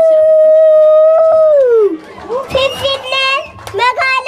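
A child's voice, heard through microphones, holding one long high note that slides down and breaks off about two seconds in, followed by short broken sung phrases.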